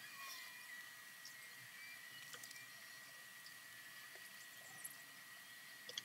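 Near silence: a faint steady high-pitched tone, with a few faint scratches of a pen drawing on paper.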